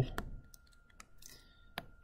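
Stylus tapping and scraping on a tablet screen while handwriting: three faint clicks about 0.8 s apart, with a short scratch between the second and third, over a faint steady high whine.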